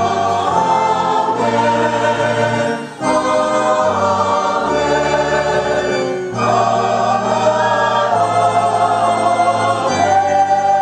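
Church choir singing with organ accompaniment, in sustained phrases broken by short pauses about three and six seconds in.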